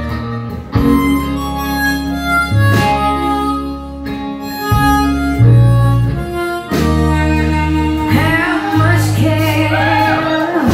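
Live band instrumental break led by a harmonica solo over electric guitar, bass and drums, with drum hits about every two seconds. Near the end the notes bend and waver.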